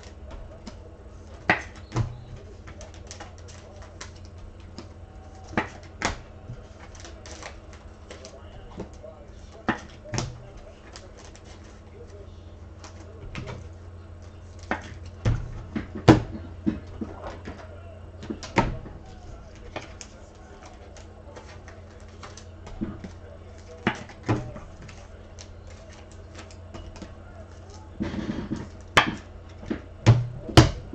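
Scattered sharp taps and clicks of handling at a desk, a dozen or so spread unevenly, over a low steady electrical hum.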